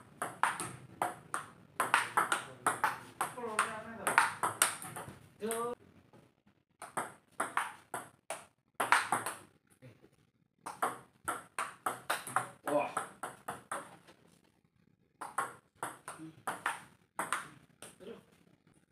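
Table tennis ball clicking back and forth off paddles and the table in quick rallies, in several runs of rapid clicks broken by short pauses between points.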